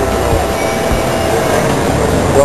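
Metal airport luggage trolleys rolling and rattling over pavement, a steady rumble with some squeaking from the wheels.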